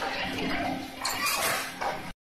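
Metallic clattering and clinking from paper plate making machinery, over a faint steady hum.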